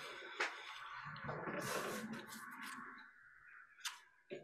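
Faint rustling and handling noise, with a sharp click near the end.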